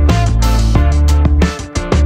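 Instrumental background music with a steady beat and a strong bass line; the beat drops out briefly near the end.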